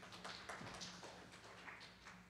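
Faint paper rustling and a few small taps as sheet music and a booklet are handled, over a low steady hum.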